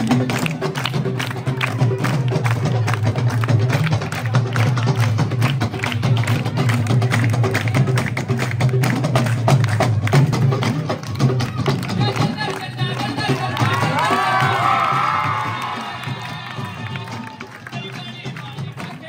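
Live devotional folk music: dholak and other hand drums played in a dense, rapid rhythm, with hand-clapping and voices over it. Near the end a few high wavering voice lines rise above the drumming, and the music then drops back in volume.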